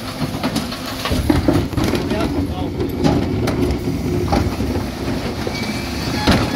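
Dennis Elite 6 refuse lorry running at the kerb while its Terberg bin lift cycles wheelie bins, with repeated clattering knocks from the lift and the plastic bins.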